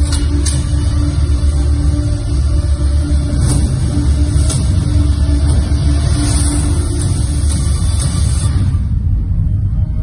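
Film trailer soundtrack playing over a hall's loudspeakers: music over a heavy, steady low rumble. The high end thins out about nine seconds in.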